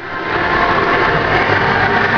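Loud, steady din in an indoor pool hall during a finswimming race: spectators cheering and several swimmers splashing, blended into one noise. It swells over the first half second.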